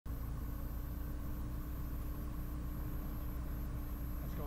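SportCruiser light aircraft's Rotax 912 engine idling on the ground, a steady low drone heard inside the closed cockpit.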